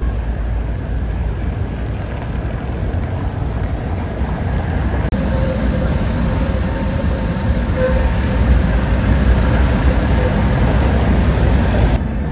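Street traffic rumble. About five seconds in, the sound changes abruptly to an electric tram running past, with a steady motor tone over a louder rumble that builds toward the end.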